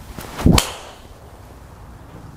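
TaylorMade M5 Tour driver swung through and striking a teed golf ball: a short swish of the club rising into one sharp crack of impact about half a second in. It is a well-struck drive, which the golfer says he ripped.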